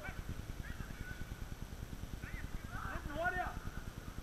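Distant shouts of players calling across the pitch, a few short calls, the clearest about two to three seconds in, over a constant low rumble on the microphone.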